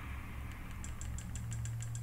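Remote-control direction button pressed repeatedly to scroll, quick plastic clicks about five a second starting under a second in, over a steady low hum.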